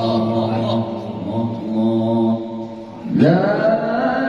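A man reciting the Qur'an in melodic tilawah style through a microphone, holding long, drawn-out notes. Near the three-second mark the voice drops away briefly, then a new phrase begins with a rising pitch.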